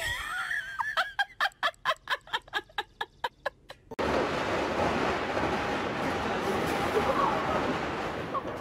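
Rapid, rhythmic laughter of a person, about five bursts a second, for the first few seconds. About four seconds in it cuts off, and a steady outdoor hiss follows.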